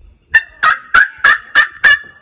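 A loud series of six rapid, harsh bird-like calls, about three a second, ending in a brief held note.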